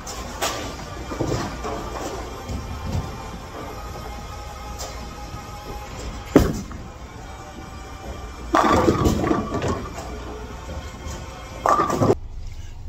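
Bowling ball set down on the lane with a sharp thud about six seconds in, then some two seconds later a clatter of pins lasting over a second, over background music in a bowling alley.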